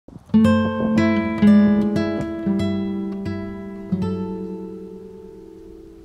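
Background music: acoustic guitar playing plucked notes about twice a second, then a chord about four seconds in that rings on and fades away.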